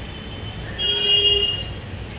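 A short, steady, high-pitched tone sounds about a second in and lasts about half a second, over a low steady background rumble.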